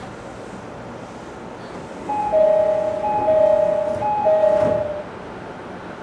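JR East 209 series door-closing chime, a two-note high-low ding-dong sounded three times, as the train's doors slide shut. The chime sounds over the low steady hum of the stationary train.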